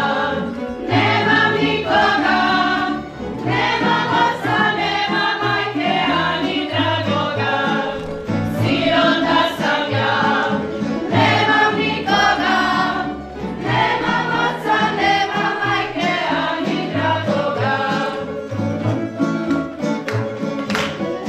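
Mixed voices singing a Slavonian folk song together in phrases of a few seconds, over a tamburica string band with bass.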